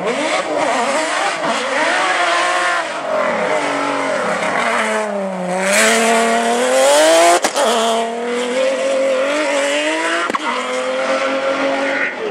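A rally car's engine approaches with revs rising and falling through the gears, drops low as it slows into the corner, then accelerates hard out of it with a rush of grit and tyre noise, loudest a little past the middle. A sharp crack follows, and the engine keeps running strongly as the car pulls away.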